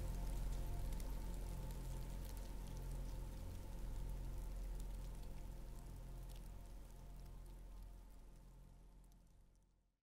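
Faint steady rain ambience with scattered drop ticks over a low hum. It fades out over the last few seconds to silence.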